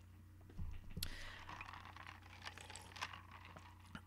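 A few faint scattered clicks and light taps, a cluster about half a second to a second in and lighter ones later, over a low steady hum.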